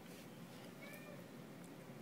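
Near silence: faint room tone, with one short, faint high-pitched call about a second in.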